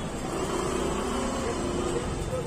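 Steady background noise with a low rumble and a faint wavering hum, with no distinct event standing out.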